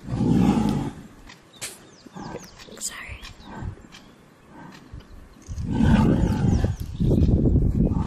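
Lions growling over a buffalo kill: a short, loud, low growl at the start and a longer one from about five and a half seconds in, with birds chirping in the gap between.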